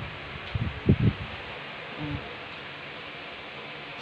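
Steady hiss of rain falling, with a few short faint voice sounds about a second in and again near the middle.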